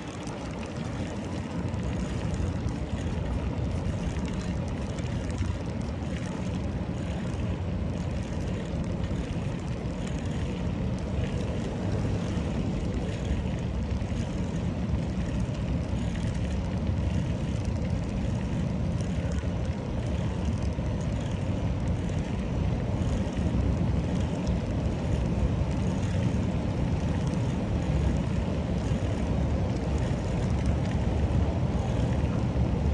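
Steady low rumble of wind buffeting the microphone, mixed with bicycle tyres rolling over brick paving.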